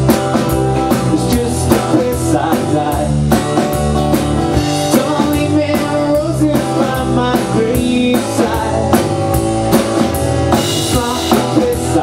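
Live rock band playing the instrumental opening of a song: a drum kit keeping a steady beat under strummed acoustic guitar, electric guitar and bass.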